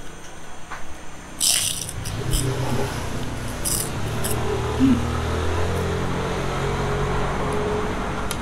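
A crisp crunch of a bite into rambak, a fried pork-skin cracker, about a second and a half in, then a few shorter crunches of chewing. A low rumble builds underneath from about two seconds on.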